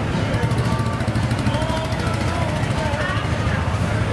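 Street traffic: a vehicle's engine running as it passes close by, a steady low rumble with a fast ticking in the first half, over the chatter of voices nearby.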